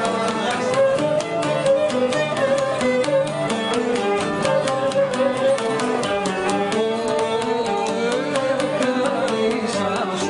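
Instrumental Cretan folk music: a wavering melody line played over a quick, even pulse of plucked-string or percussive strokes, with no singing.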